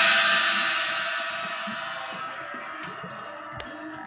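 A 19-inch Ultra Hammer china cymbal ringing out from a single hit, its bright wash fading steadily over about three seconds.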